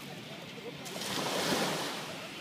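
A small wave breaking and washing up the sand: a hiss of surf that swells about a second in and eases off near the end.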